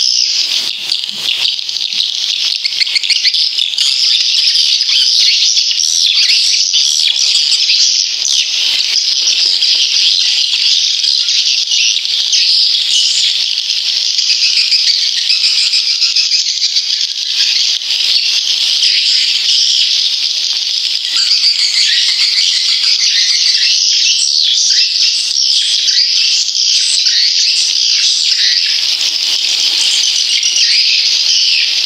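Dense, continuous, high-pitched twittering of swiftlets from a swiftlet lure-sound recording, the kind played in swiftlet houses to draw the birds in to nest.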